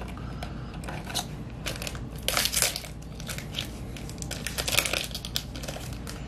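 Foil booster-pack wrapper crinkling and rustling in the hands in irregular bursts, loudest about two and a half seconds in and again near five seconds, as a trading-card pack is handled and opened.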